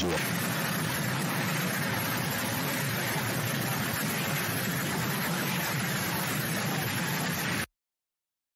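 A steady, loud rushing noise that cuts off suddenly about a second before the end.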